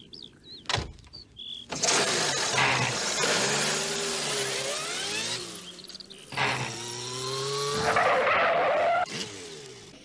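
A small van's engine, as a cartoon sound effect, revving hard and pulling away at speed: a sharp click about a second in, then the engine note climbing and falling in two long surges, the second fading out near the end.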